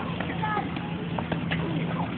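Voices of a crowd of onlookers calling out and shouting at a distance, over a steady low hum. A couple of short sharp knocks come in the second half.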